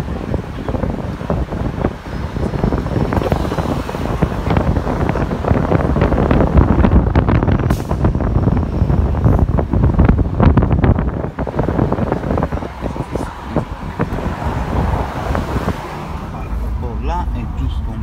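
City street traffic noise with wind buffeting the phone microphone and the voices of passers-by, loudest around the middle. Near the end it gives way to the duller hum of a car's cabin.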